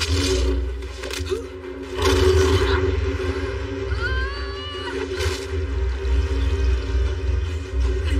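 Dramatic film score over a continuous deep rumble of sound effects, with loud surges about two seconds in and again near five seconds, and a few short gliding tones around four seconds.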